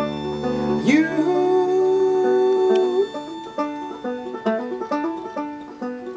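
Chamber folk string band playing with no singing. A low bowed string note drops out about a second in. A note then slides up and is held for about two seconds, and the rest is a run of quick plucked string notes.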